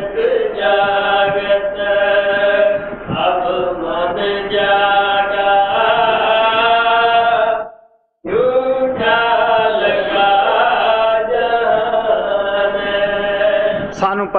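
A single voice chanting a devotional hymn in long, drawn-out notes that shift slowly in pitch. It breaks once for a breath a little before the middle, then carries on.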